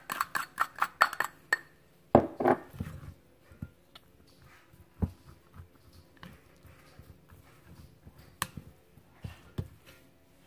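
A plastic rice paddle scraping and knocking against a glass mixing bowl while seasoned cooked rice is mixed. A quick run of light taps comes first, then a louder cluster about two seconds in, a sharp knock about five seconds in and scattered taps after.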